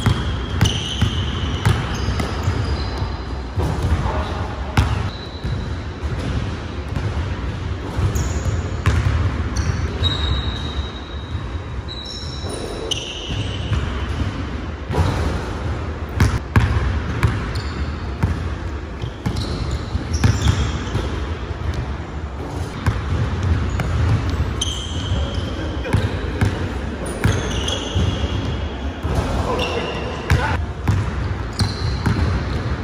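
A basketball dribbled on a hardwood gym floor, with repeated bounces, and short high-pitched squeaks of sneakers on the hardwood as players cut and stop.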